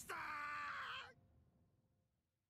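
A character's voice in the anime's Japanese dialogue holding one drawn-out vowel for about a second, then fading to near silence.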